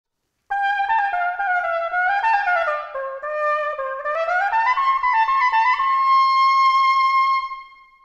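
Cornett (curved wooden cornetto) playing a solo phrase. It comes in about half a second in, winds down and back up, and ends on a long held high note that fades out near the end.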